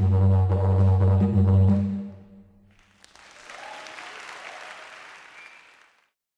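Yidaki (didgeridoo) playing a low steady drone with pulsing overtones, which ends about two seconds in. After a short pause, applause follows, fading out near the end.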